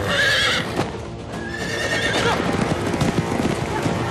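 A horse whinnies loudly at the start, then its hooves beat fast at a gallop, over film score music.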